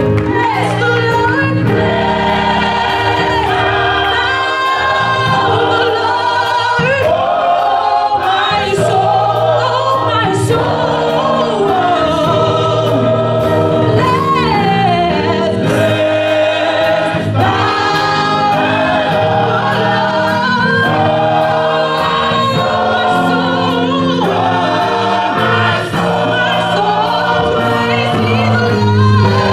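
Gospel choir singing, with a woman's lead voice over the choir and instrumental accompaniment keeping a steady beat.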